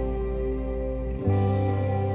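A live worship band plays a slow, gentle passage of held keyboard chords and guitars, with no singing. A little over a second in, the chord changes and a strong new low bass note comes in.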